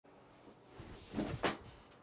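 A person sitting down in an office chair: rustling and movement, with two short knocks about a second and a quarter and a second and a half in, the second the louder.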